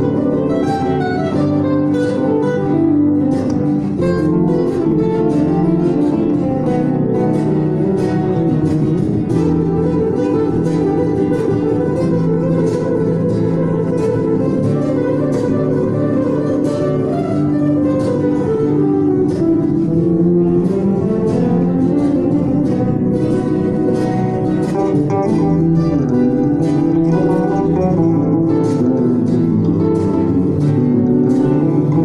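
Live instrumental duet of an amplified Godin ACS Slim nylon-string guitar and an ESP electric bass, the guitar playing fast flamenco-style picked runs over a bass line. Quick scale runs sweep down and back up, and the playing is loud and continuous.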